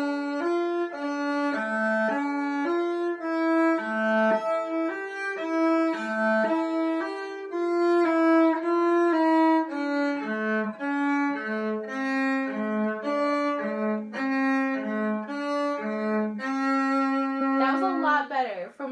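A cello bowed in a slow melodic line of separate notes, each about half a second long. It is played as loud as the player can, though the teacher judges it only a mezzo forte.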